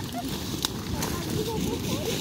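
People talking over a steady rustling noise, with one sharp snap about two-thirds of a second in.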